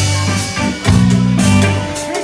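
Live reggae band playing: a deep bass line under drum kit, electric guitar and saxophones.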